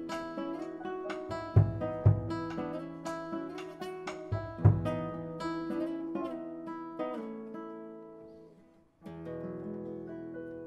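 Nylon-string classical guitar played solo, fingerstyle, with a few hard, deep accented strokes in the first half. The notes then fade away to a brief silence, and a final held chord sounds about nine seconds in.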